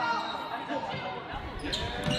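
Game sound of a girls' basketball game in a gym: a basketball bouncing and faint voices echoing in the large hall.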